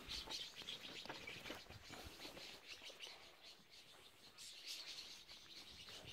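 Faint chirping of birds: scattered short, high calls throughout, a little busier at the start and again about four and a half seconds in.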